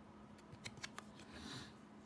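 Faint handling of glossy trading cards as one card is slid away and the next brought forward: a few light ticks in the first second, then a soft swish of card over card about a second and a half in.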